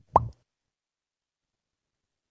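A single brief mouth plop near the start, a lip or tongue smack that sweeps quickly up in pitch, as the man speaking pauses.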